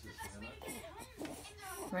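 Faint, indistinct voices talking in the background, then a nearby adult voice starting to say a word right at the end.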